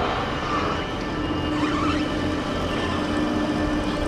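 Outdoor yard noise of vehicle engines running, with a steady low hum that comes in about a second in.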